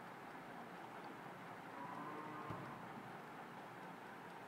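Faint steady background hiss with a brief, faint distant tone about two seconds in, lasting under a second, and a soft click just after it.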